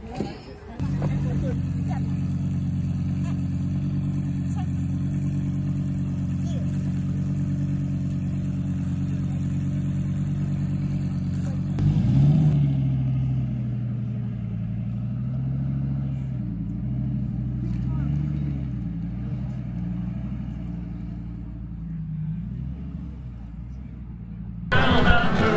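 A vehicle engine idling steadily. About halfway through the sound changes abruptly to another engine idle whose note rises and falls slightly.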